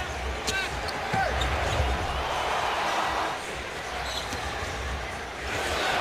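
A basketball being dribbled on a hardwood court over the steady noise of an arena crowd, with a few short squeaks about half a second and a second in.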